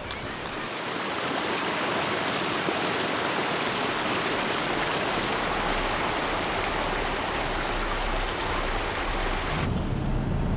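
Rushing water of a fast river running over rocks: a dense, steady hiss that builds over the first couple of seconds. It cuts off abruptly near the end and gives way to a car's low hum.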